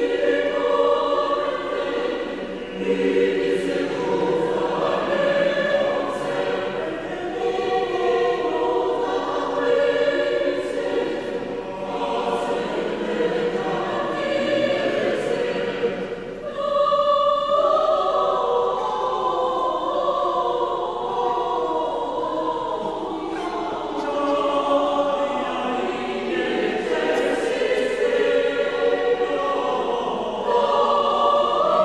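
Choir singing a sacred piece in a cathedral, sustained notes from many voices with a brief break about halfway through before the voices come back in.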